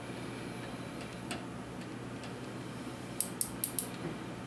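Faint steady hum of the shop, then near the end a quick run of about five small, sharp clicks, typical of a micrometer's ratchet thimble closing on the edge-finder probe's ball.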